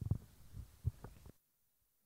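Faint, muffled off-microphone speech, heard mostly as low thuds a few syllables apart. It cuts off abruptly to near silence about a second and a half in.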